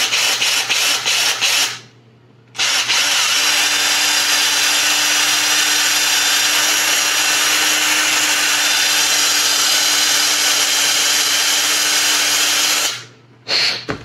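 Cordless drill with a 5/32-inch bit enlarging a hole in a small hand-held part. First come several quick bursts on the trigger, then a short pause, then about ten seconds of steady drilling at one even pitch, which stops near the end, followed by one more short burst.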